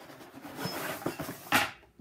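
Unboxing handling: a cardboard box and the parts of a tiered tray rustling and sliding as they are pulled out, then one sharp knock about one and a half seconds in as a piece is set against something.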